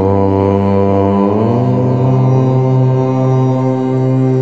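Low voice chanting a long, held Om that starts suddenly, its pitch stepping up slightly about a second in and then holding steady, over sustained background music.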